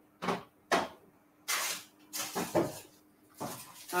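Handling noises: two short knocks, then a few bursts of rustling and scraping, like things being moved about and a cupboard or door being worked.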